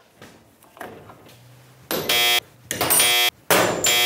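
Three short electronic game-show buzzer tones in the second half, each about half a second long and under a second apart: a 'miss' sound effect, one for each failed attempt to get the magnetic light to stick.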